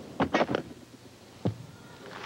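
Impacts of a gymnast's laid-out Yurchenko vault: a quick cluster of thumps as she strikes the springboard and pushes off the vaulting horse, then about a second later a single loud thud as she lands on the mat.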